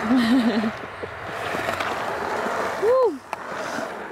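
Skateboard wheels rolling on a concrete bowl, an even rushing noise in the middle, with a short wavering voice at the start and a loud rising-and-falling vocal "ooh" about three seconds in.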